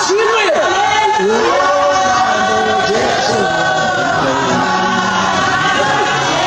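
A congregation singing together in chorus, with a man's voice on the microphone among them.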